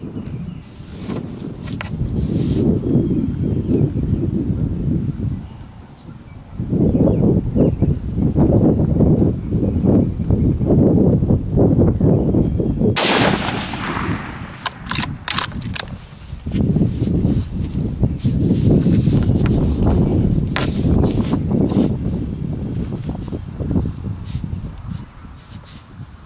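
Wind buffeting the microphone in loud gusts, with a single shot from a Ruger American bolt-action .308 rifle about halfway through, followed shortly by a quick run of clicks as the bolt is worked.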